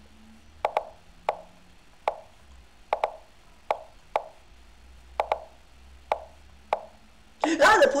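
Lichess move sound effects: a short wooden clack for each chess move, about a dozen in quick succession as a bullet endgame is played at speed.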